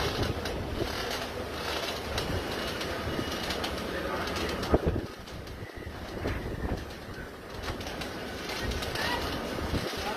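Hurricane wind gusting with driving rain, loud on the phone's microphone and rising and falling from moment to moment. There is one sharp knock just before five seconds in.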